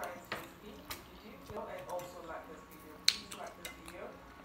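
Forks clicking and tapping against ceramic plates of noodles during eating, a few sharp clicks spread out, the sharpest about three seconds in, with a faint voice murmuring in the middle.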